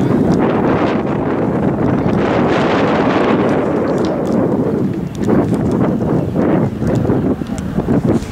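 Wind buffeting the camera microphone, a loud, steady rumbling rush, with a few short sharper sounds in the second half.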